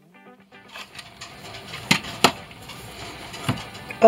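Background music that stops within the first half-second, then low room noise with sharp clicks and taps as an acrylic quilting ruler and fabric pieces are handled on a rotary cutting mat: two clicks about two seconds in and another near the end.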